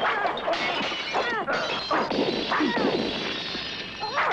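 Film-soundtrack fight: a dense run of crashing, smashing impacts, with short high sliding sounds over them.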